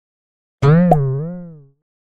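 A cartoon-style 'boing' sound effect, the audio sting of the Janod logo: one springy twang whose pitch wobbles up and down, with a small click near its start, fading out over about a second.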